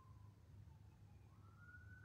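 Near silence, with a faint distant siren wailing. Its pitch falls slowly, then rises again near the end.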